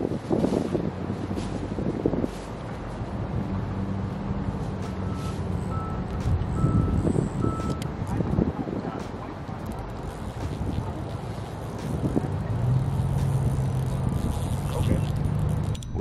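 A motor vehicle's engine humming steadily, growing louder twice, with a few short high beeps about five to seven seconds in.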